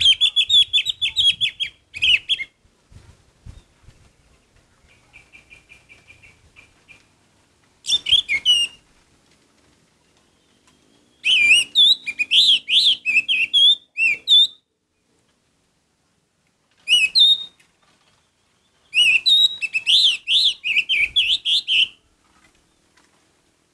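Orange-headed thrush singing in loud bursts of rapid, wavering whistled phrases, about five bursts separated by short silences. A softer fast twitter comes between the first and second bursts.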